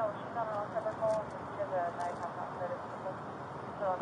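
Indistinct speech that the recogniser did not catch, over a steady background hum.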